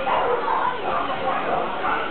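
A cocker spaniel barking and whining, with people talking in the background.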